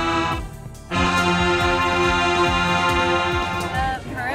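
Marching band's wind section playing long sustained chords. The sound breaks off for about half a second early on, then a second chord is held until just before the end.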